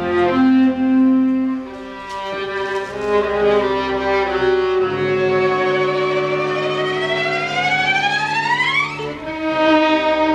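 Solo violin and viola playing with a chamber string ensemble over held low string notes. About halfway through, one solo line slides steadily upward for over three seconds, then breaks off about a second before the end as new notes come in.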